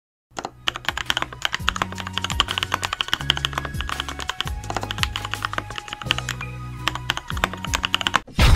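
Rapid computer-keyboard typing sound effect, many clicks a second, over music with a low bass line that shifts pitch every second or so.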